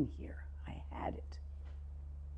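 Soft, near-whispered speech from a woman for about a second, then only a steady low hum that runs under it throughout.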